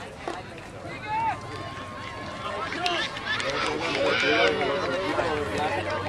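Several voices shouting and calling out across an outdoor soccer field during play, overlapping and loudest about four seconds in.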